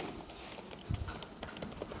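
Computer keyboard typing: a quick, irregular run of key clicks, with one dull low knock about a second in.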